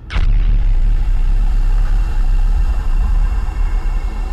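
A sharp hit with a whoosh right at the start, then a loud, deep, steady drone with held tones, typical of the sound design of a TV news opening sequence.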